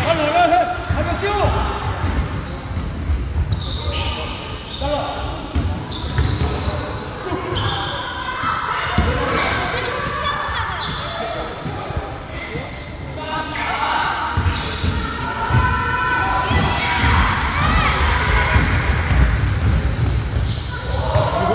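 A basketball being dribbled and bouncing on the hardwood floor of a large gym during a youth game, with players' footsteps and voices calling out over it in the echoing hall.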